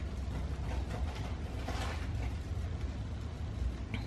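A dog treat being broken into small pieces between the fingers, with a short crackling crumble about two seconds in, over a steady low hum.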